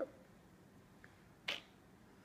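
A single sharp plastic click about one and a half seconds in, as a small plastic LOL Surprise doll is pried apart at the head by hand.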